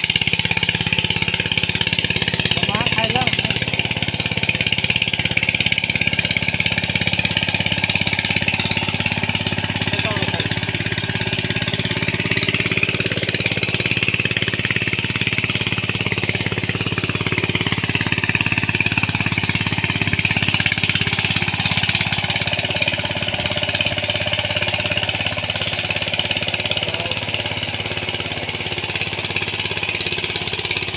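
Walk-behind power tiller's single-cylinder diesel engine running steadily under load as it tills a flooded paddy field.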